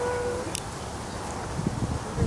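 Wind rumbling on the microphone outdoors. A held steady tone stops about half a second in, followed by a brief click.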